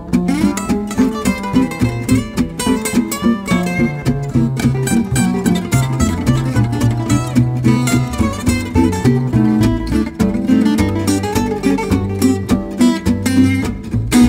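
Instrumental break of a gypsy-jazz swing tune: an acoustic guitar plays a solo melody line over a second acoustic guitar strumming steady rhythm chords on the beat and a plucked double bass walking line.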